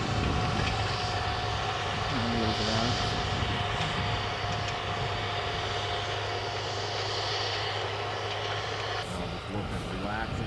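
Farm tractor engine running steadily under load as it pulls a strip-till planter bar through the field, a constant drone with a steady hum.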